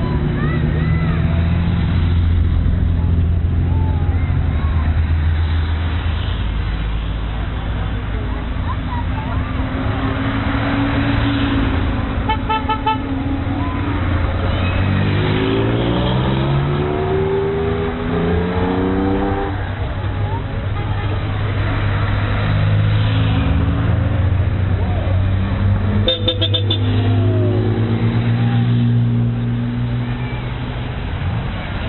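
Classic rally cars driving past at low speed, engines running, with one revving up and rising in pitch about halfway through. A car horn sounds in short toots twice, a little before halfway and again near the end.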